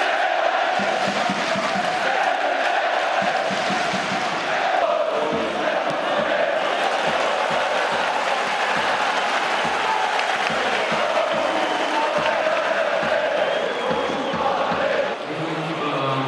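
Large stadium crowd of football supporters chanting together in one sustained mass of voices, with a regular low beat underneath through the middle.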